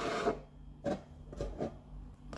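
Handling noise from a diecast model and a clear plastic display case being moved on a table: a brief soft rub, then a few faint light knocks.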